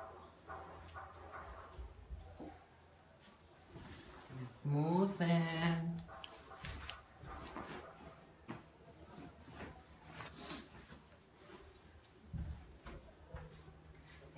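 A person's voice makes one drawn-out vocal sound that glides up in pitch and then holds, about five seconds in. Faint murmured talk comes near the start, and light rustling of a bed cover being smoothed and tucked runs through the rest.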